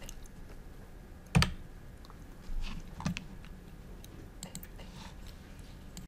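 Computer-desk handling noise of mouse and keyboard: a few scattered clicks and ticks, with one sharp, louder knock about a second and a half in and a brief rustle around three seconds in.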